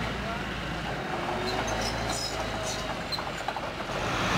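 Steady low rumble of a tracked tank's engine running, with faint voices of people around it.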